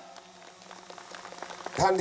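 Scattered applause from a small outdoor crowd, thin at first and growing a little louder over the two seconds.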